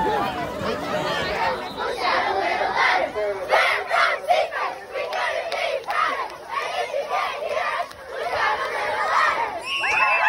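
A large group of young cheerleaders shouting together, their yells coming in a rhythmic chant of about two to three shouts a second.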